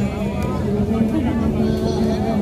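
A woman singing through a handheld microphone and PA speaker over a backing track, holding a long note near the end.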